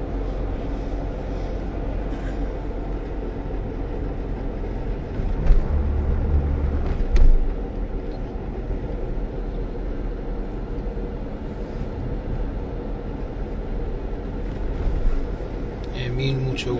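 Steady road and engine rumble of a car driving, heard from inside the cabin, with a couple of louder thumps about five and seven seconds in.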